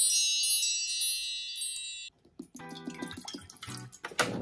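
A sparkling, wind-chime-like sound effect: many high ringing tones together, which cut off about two seconds in. After a brief pause, quieter ringing tones and light clinks follow.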